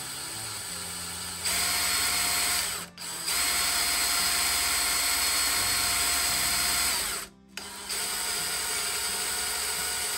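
Cordless drill with a metal-cutting bit running steadily as it bores a hole through the end of a metal spoon resting on a wood board. It gets louder about a second and a half in, cuts out for a moment twice, about three seconds in and again past the seven-second mark, then runs on a little quieter.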